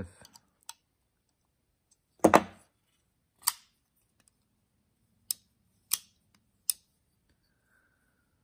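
Four short, sharp clicks spaced over a few seconds as a Spyderco Paramilitary 2 folding knife and a bit driver are handled during a pivot adjustment.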